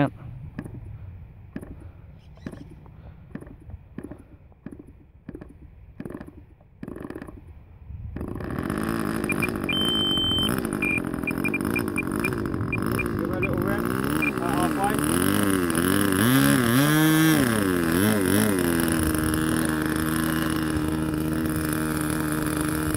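Small nitro glow engine of an RC model plane being started. Scattered clicks and knocks come first; about eight seconds in it catches and runs, and its pitch wavers up and down before settling into a steady run.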